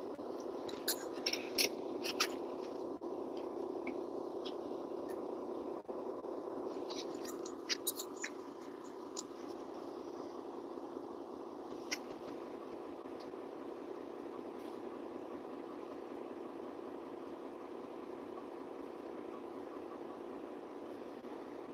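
Steady mechanical hum in a parked semi truck's cab, with a few light clicks in the first half.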